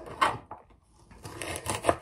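Kitchen knife slicing through a fennel bulb onto a plastic chopping board: a cut about a quarter second in, a short pause, then a run of cuts in the second half, the last one the sharpest.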